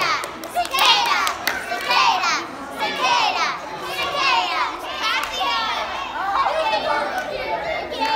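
A group of children shouting and cheering excitedly, many high-pitched voices overlapping, with some hand clapping.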